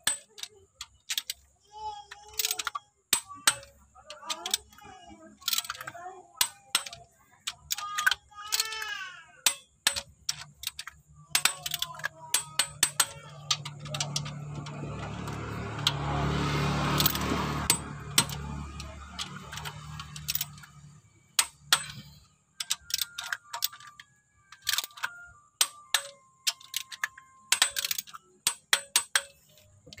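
Ratchet and wrench clicks of a click-type torque wrench tightening a Toyota 5K engine's cylinder head bolts to a first stage of 5 kgf·m: sharp metallic clicks in scattered runs. A low rumble swells and fades in the middle.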